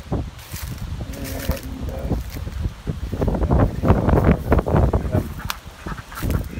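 Wind buffeting the phone's microphone, a deep rumble with rustling that gusts louder in the second half.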